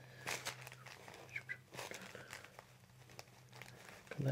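Faint crinkling and rustling of the paper table cover under a patient's head as a chiropractor's hands hold and gently press her neck, a few soft rustles scattered through, over a faint steady hum.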